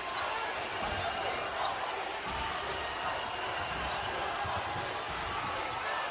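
A basketball being dribbled on a hardwood court, a soft thud about every half second, under the steady din of an arena crowd.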